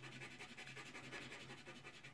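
Soft pastel stick scratching faintly and irregularly on paper as a patch of colour is rubbed on, over a faint steady low hum.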